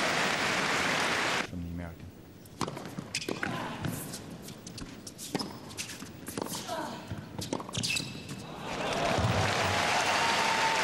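Crowd applause dies away. A tennis point follows on a hard court: a string of sharp ball bounces and racket strikes. Applause swells again near the end.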